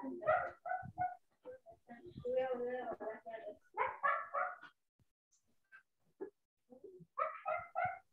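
A dog barking in short bursts, with some whimpering, picked up by a participant's microphone on a video call; a quick run of barks comes near the end.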